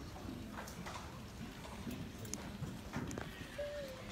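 Quiet school auditorium before the band plays: scattered small clicks and knocks from the audience and players settling, with one brief wavering tone near the end.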